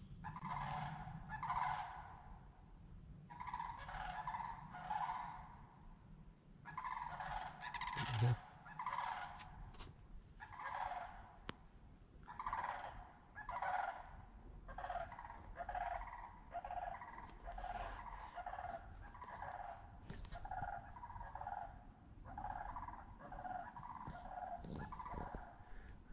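Birds calling over and over in short, broken phrases, each lasting a fraction of a second and repeating about once a second. The calls are moderately faint.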